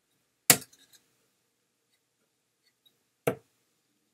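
Two Loxley Steve Hine steel-tip darts landing in a dartboard, one about half a second in and the next about three seconds later. Each is a sharp thud; the first, louder one is followed by a short rattle.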